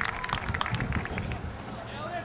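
Scattered clapping from a stadium crowd, dying away over the first second, over low crowd murmur and wind rumble.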